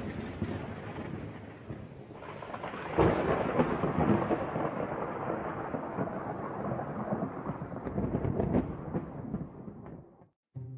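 Thunder with rain: a rolling rumble decays, a second roll swells up about three seconds in, and the sound fades out near the end.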